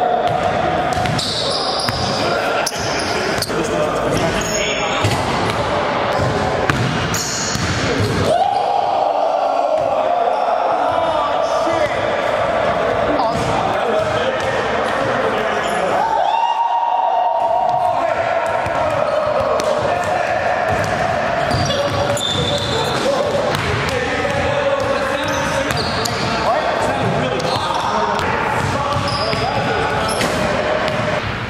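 A basketball dribbled and bounced on a hardwood gym floor, with voices in the background. Under it runs a sustained tone that starts anew about every eight seconds.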